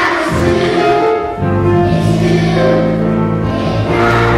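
Children's choir singing, with a low instrumental accompaniment under the voices.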